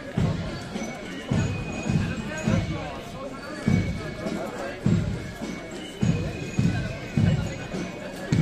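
Marching-band bass drum beating a steady march rhythm, low thuds roughly every half second to second, with voices talking over it.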